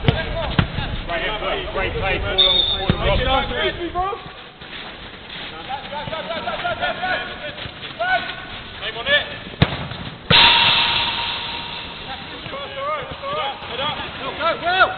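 Players shouting and calling during a small-sided football game on an artificial pitch, with sharp thuds of the ball being struck. About ten seconds in comes a sudden loud crash with a ringing rattle that fades over a couple of seconds.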